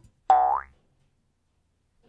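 A short cartoon 'boing' sound effect: a single springy tone that bends upward in pitch and lasts under half a second.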